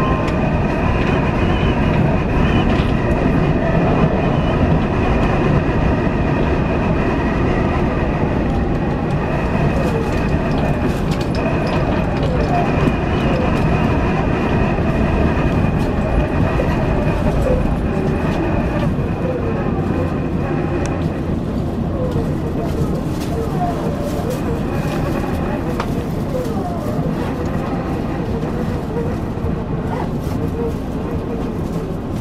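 Electric commuter train running on the rails, heard from the cab, with a steady high whine from its traction equipment. In the last third the whine stops and the motor tones step down in pitch as the train brakes into a station.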